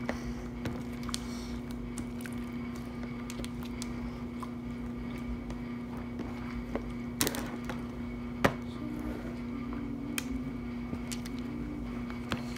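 Hand-worked slime being pressed and stretched in a tray, giving scattered soft clicks and pops, the loudest about seven and eight and a half seconds in. A steady low hum runs underneath.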